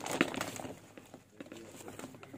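Small plastic scoop digging into and scraping potting soil in a plastic pot, with a sharp knock near the start, then soft gritty scraping and scattered small clicks.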